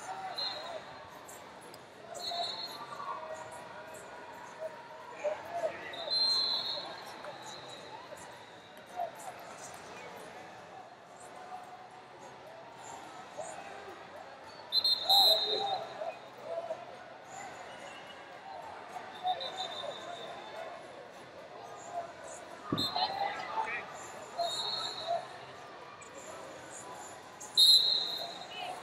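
Wrestling tournament hall ambience: distant voices and shouts in a large echoing hall, with several short high-pitched squeaks or chirps and a single thump about three-quarters of the way through.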